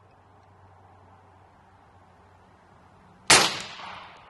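Umarex Gauntlet .30-calibre PCP air rifle firing a single shot a little over three seconds in: one sharp report with a short decaying tail.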